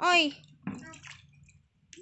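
Water in a tub splashing briefly about two-thirds of a second in as a plastic mug is dipped and scooped through it.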